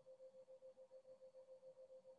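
Near silence, with a faint steady tone that pulses quickly, about seven times a second.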